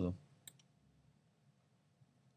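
A single sharp computer mouse click about half a second in, then a faint tick, over quiet room tone.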